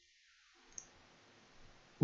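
Near silence broken by a single short mouse-button click just under a second in, with a fainter tick later.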